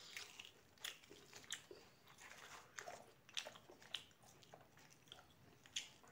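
Quiet, close-miked eating: chewing deep-fried puri bread and chickpea curry, with irregular crisp crunches and wet mouth clicks.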